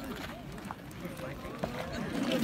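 Voices of a group of men talking in the background, faint and overlapping, with a few brief clicks.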